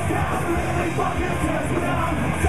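Live punk rock band playing: distorted electric guitar, bass guitar and drums under a shouted lead vocal.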